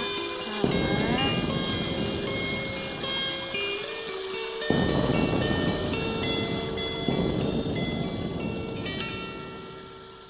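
Electric guitar chords, each struck and left ringing with the band's music, with fresh chord hits about a second in, near the middle and about seven seconds in, then fading out at the end.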